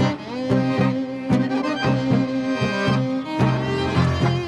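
Argentine tango music led by bowed strings: held violin lines over short, evenly repeated low notes that keep a pulsing beat.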